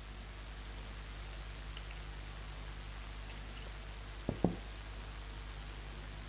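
Quiet handling of a metal spray gun and a T-handle tool while its side retaining pin is pushed out: a few faint small clicks and a brief soft double knock about four seconds in, over a steady low hum.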